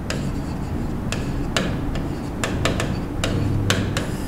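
Pen tip tapping and scratching on the glass of an interactive display board during writing: about ten sharp, unevenly spaced clicks over steady room noise.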